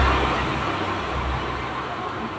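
Low rumble of a road vehicle passing by, fading away.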